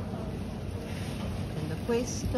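Steady store background noise, a low rumble and hiss, with faint voices in the background.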